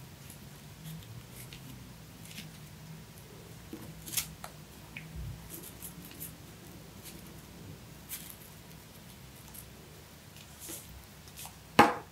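Faint paper rustling and small clicks as hands press paper leaves and bead stems onto a card, with one sharp knock near the end as a glue stick is set down on the tabletop.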